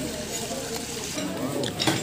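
Spoons and forks scraping and clinking on plates, over a faint murmur of voices, with a sharp knock near the end.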